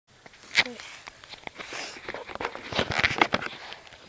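Handling noise on the recording iPod: irregular clicks, knocks and rustling as the device is gripped and moved by hand, with one sharp click about half a second in and a denser run of knocks near the three-second mark.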